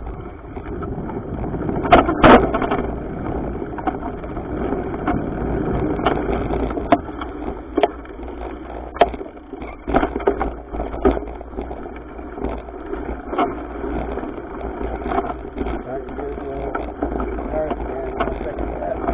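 Mountain bike ridden over dirt singletrack, heard through a camera mounted on the bike: a steady rumble with frequent clattering knocks as the wheels hit bumps and roots, two of them loud about two seconds in.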